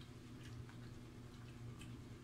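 Faint, sparse clicks and crackles of crispy fried chicken feet being picked up off a plate, over a steady low hum.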